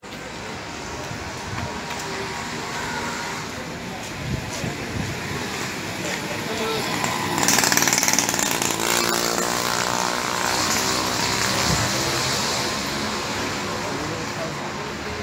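Small motorcycle engine passing close by, loudest a little past halfway, its engine note fading as it moves off, over a background of street traffic.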